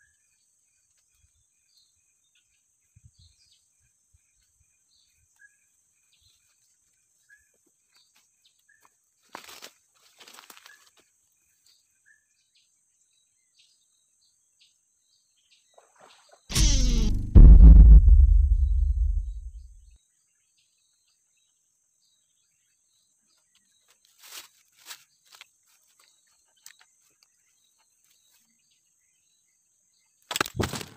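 Forest ambience: a steady high-pitched insect drone with scattered short bird chirps. A few faint clicks and rustles come about a third of the way in and again later. Just past the middle, a loud low thump and rumble lasts about three seconds.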